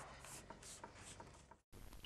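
Near silence with faint rubbing and a few soft ticks as hands press a flexible mesh-backed flashing down onto clay roof tiles. The sound drops out completely for a moment near the end.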